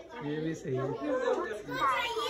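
Chatter: several high-pitched voices of children and women talking over one another.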